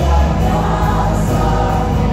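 A band with electric and acoustic guitars and bass accompanying a group of singers in a loud, steady gospel song.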